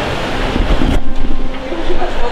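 Loud, steady rushing of a fast mountain river, a dense noise without rhythm that drowns out other sounds.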